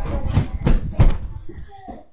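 Footsteps: a run of dull thumps about a third of a second apart, fading toward the end.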